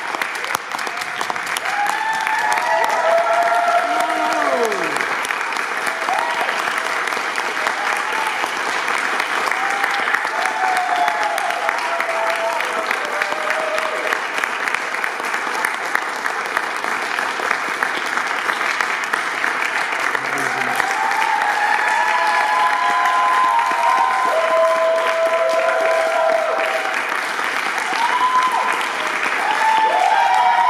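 Audience applauding, a dense, steady clapping, with voices calling out over it near the start and again in the second half.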